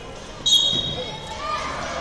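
Referee's whistle blown once about half a second in: a short, shrill blast that stops the wrestling. Voices in the hall follow.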